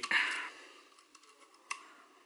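Faint handling sounds of thin electrical wires being fed into a plastic model-ship funnel: light rustling and small plastic clicks, with one sharper click near the end.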